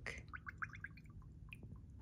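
Homemade almond milk glugging out of a jar as it is poured into small jars: a quick run of faint gurgles in the first second, then a light click.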